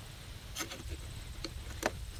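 A few light clicks of a loaded pistol magazine and .380 cartridges being handled at a CZ 83 pistol, the sharpest click near the end, over a low steady rumble.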